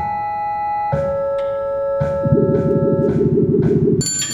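Computer-synthesized video-game sounds played through speakers: held electronic tones that step from one pitch to another, with short low thuds at intervals. A little past two seconds in, a low rapid buzz joins in, and everything cuts off at the end.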